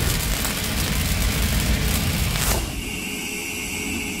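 Cinematic logo-sting sound effect: a heavy low rumble with a noisy crackle over it. About two and a half seconds in, a sweep falls in pitch, and the sting settles into a thin high ringing tone that slowly fades.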